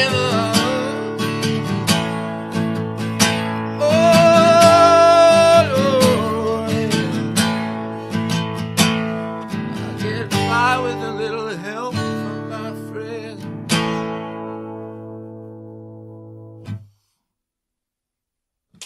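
Acoustic guitar strummed in the closing bars of a song, with a voice singing long held notes over it. The strumming stops about 14 seconds in, and the final chord rings and fades away. The sound cuts off a few seconds later.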